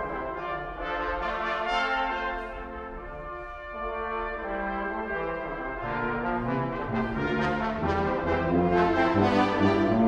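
A brass quintet of two trumpets, French horn, trombone and tuba playing a concert piece of sustained, overlapping notes. The sound thins and quietens a few seconds in, then low bass notes come in about six seconds in and the ensemble grows louder toward the end.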